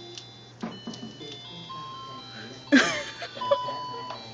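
Simple electronic melody of clear single notes, tinny like a musical toy or light chip, playing a Christmas tune. A person's voice cuts in loudly for about a second near the three-quarter mark, with a few light clicks shortly before it.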